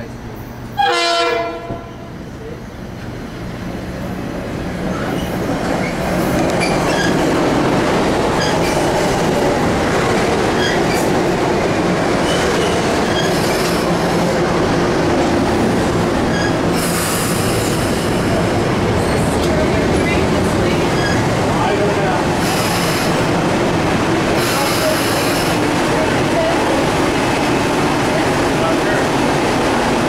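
A Metro-North electric multiple-unit commuter train (M-6 cars) gives one short horn blast about a second in, then runs in along the platform. Its rumble builds over the next few seconds to a steady loud level, with a few short high-pitched sounds from the train in the last third.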